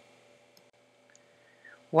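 A single faint click, like a computer mouse button, about a third of the way in, against quiet room tone.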